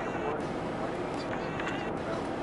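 Steady interior drone of a Prevost X345 coach's Volvo D13 diesel engine and running gear, heard from inside the passenger cabin, with passengers' voices over it.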